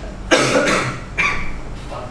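A person coughing: a sudden harsh cough about a third of a second in, then a second shorter burst a little over a second in.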